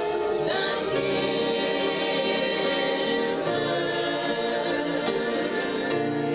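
Church gospel praise team, several women and a man, singing together into handheld microphones, holding long notes.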